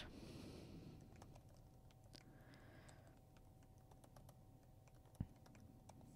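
Faint typing on a computer keyboard: soft, scattered key clicks, with one louder click about five seconds in.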